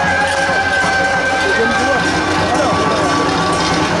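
Procession music with long held wind-instrument notes, mixed with people's voices. One held note changes to a lower pitch a little past halfway.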